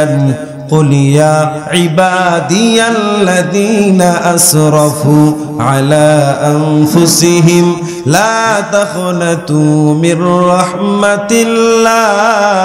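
A man chanting a slow, melodic Islamic recitation into a microphone. He holds long notes and slides and ornaments between them, pausing only briefly for breath.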